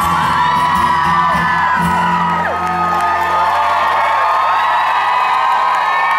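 Live concert audience whooping and cheering over music that holds a sustained note at a song's close.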